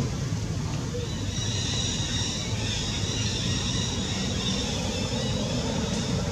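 Steady outdoor background noise: a continuous low rumble, joined about a second in by a steady high-pitched buzz.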